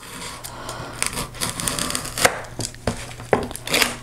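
Box cutter blade drawn along the gutter of an old hardcover book, slicing through the paper where the pages meet the spine: irregular rasping scrapes with a few sharper strokes.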